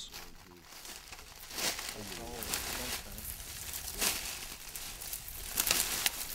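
Footsteps crunching and rustling through dry brush and leaf litter, in irregular steps, with faint talking in the background.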